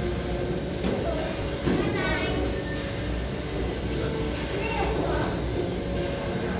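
Shopping-mall ambience: people talking nearby, with background music and a steady low hum.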